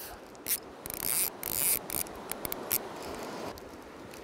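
Fly reel and line being worked by hand to bring in a hooked trout, giving irregular scratchy clicks and rustles, over the steady rush of river water.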